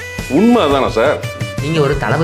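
Speech over background music with guitar.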